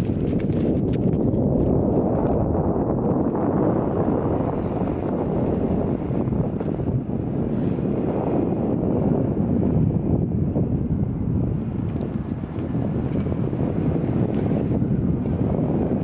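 Wind buffeting the camera's microphone while it moves along at riding speed: a loud, steady, gusting low rumble.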